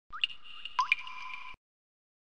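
End-card sound effect: three quick rising, drip-like blips over a steady high electronic tone, cutting off abruptly about one and a half seconds in.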